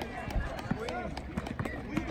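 Outdoor youth basketball game: players' footsteps running on an asphalt court, with scattered short shouts and calls from players and spectators.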